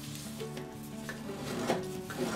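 A sheet of printer paper rustling as it is folded in half diagonally and creased flat by hand, with a couple of sharper crinkles.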